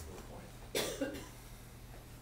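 A person coughs once, short and sharp, about a second in.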